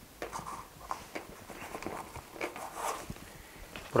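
Hands handling metal tools in a padded fabric tool case: a string of light, irregular clicks and taps with soft rustling.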